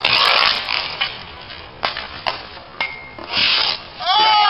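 Hockey sticks scraping on asphalt in a street hockey game, loudest at the start and again near the end, with three sharp knocks of stick or ball in between.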